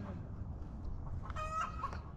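A single short animal call with a clear pitch, about half a second long, about one and a half seconds in, over a steady low background rumble.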